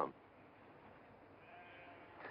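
A sheep bleating faintly once near the end, over a quiet background.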